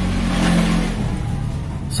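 A motor vehicle passing: its noise swells to a peak about half a second in and then fades away, over background music.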